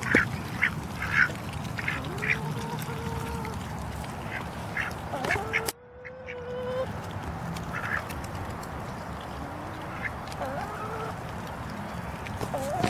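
A small flock of domestic ducks feeding on corn kernels, giving short quacks and low calls now and then. The sound breaks off abruptly about halfway through and then carries on.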